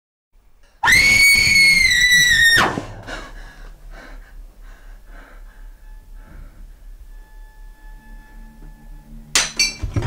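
A loud, high-pitched scream held for about two seconds, then cut off abruptly, followed by a quieter stretch of low hum and faint room noise. Near the end a sudden loud, shrill burst breaks in.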